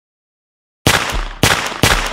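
Gunshot sound effects laid over a silent soundtrack: three sharp shots about half a second apart, starting almost a second in out of dead silence, each with a short ring after it.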